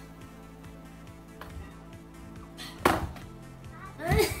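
Steady background music, with one sharp, loud thud of a hard impact nearly three seconds in.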